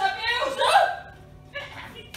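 A performer's voice making short wordless vocal sounds, loud in the first second, then dropping away to a quieter second half.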